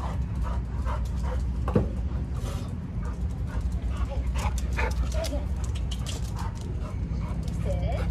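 A dog moving about on a concrete floor: scattered light clicks and a few short whines, over a steady low hum.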